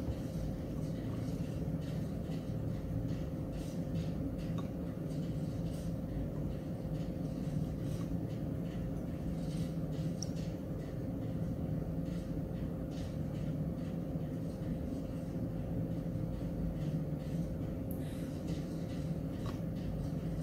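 Steady low background hum and rumble with a faint constant tone running through it, and a few faint ticks.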